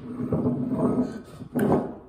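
Muffled, wordless voice sounds from someone with a mouthful of jelly bean, then a short sharp sound about one and a half seconds in.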